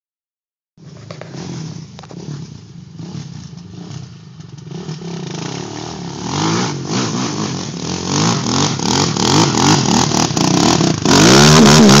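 An ATV engine revving hard on a steep dirt hill climb, its pitch rising and falling with the throttle and growing louder as it comes closer. It is loudest near the end, as the quad crests the hill with its wheels spinning and throwing dirt.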